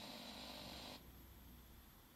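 Near silence: faint room tone with a low hum, which drops still lower about a second in.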